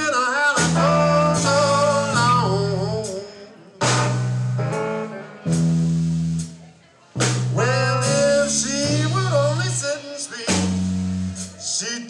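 Live blues trio of electric guitar, electric bass and drum kit playing a passage in stop-time: the band hits together, lets it ring down, and drops out briefly between phrases, almost silent around seven seconds in before coming back in.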